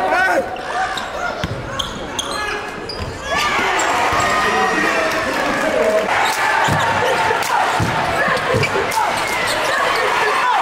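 Live basketball game sound in a school gym: a ball bouncing on the hardwood court amid players' and spectators' voices that echo in the hall. The sound is quieter for the first three seconds or so, then louder.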